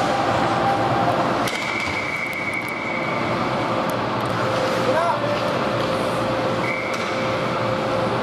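Ice rink ambience during a hockey game: a steady din of indistinct voices and hall noise, with a few sharp knocks. Two brief high steady tones sound, the first about a second and a half in and the second near the end.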